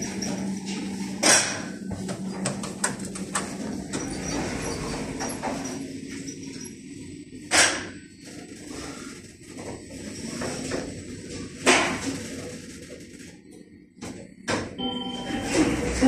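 Schindler 5400 lift car travelling down, with a low hum that fades after a few seconds and three sharp clicks spaced several seconds apart. Near the end a short chime of a few steady tones sounds as the car arrives at a floor.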